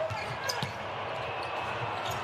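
A basketball being dribbled on a hardwood court, a few faint knocks over the arena's steady background noise.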